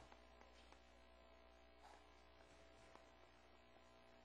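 Near silence: a steady low electrical hum with a faint high tone, and a few faint ticks.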